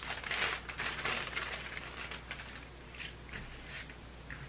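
Clear plastic cover film on a diamond painting canvas crinkling and rustling under hands smoothing it flat, in irregular crackles that thin out toward the end.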